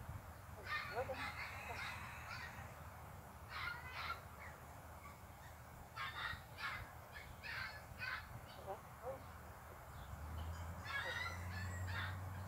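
Birds calling: several short runs of harsh calls, like cawing or honking, come and go four times. A low hum swells near the end.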